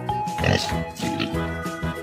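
Pig oinking, two short grunts, over cheerful children's background music.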